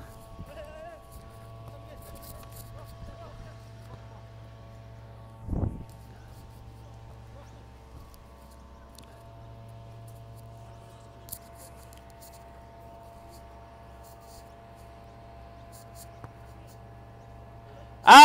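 Faint outdoor ambience of a football drill in play: a steady low hum with scattered faint ticks, and one short shout from a player about five and a half seconds in.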